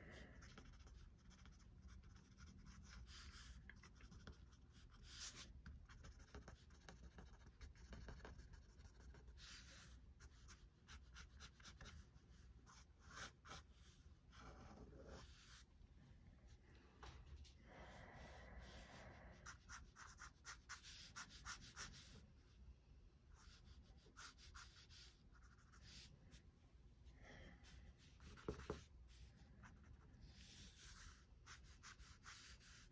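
Faint scratching of a fine-tip ink pen drawing quick sketch strokes on paper, on and off.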